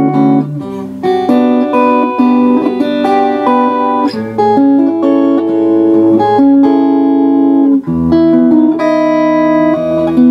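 Standard-tuned electric 12-string guitar, a Veillette Swift with Seymour Duncan Vintage Rails pickups, played through its neck pickup: a picked passage of ringing chords and single notes, with a deeper bass note coming in about eight seconds in.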